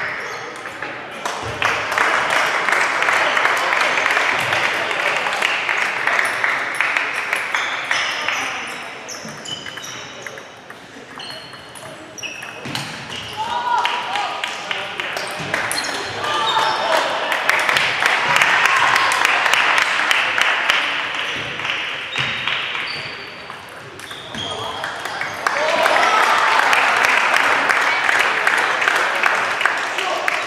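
Table tennis balls clicking rapidly and unevenly off tables and bats from many matches at once, over a din of many voices in a large hall that swells and eases off twice.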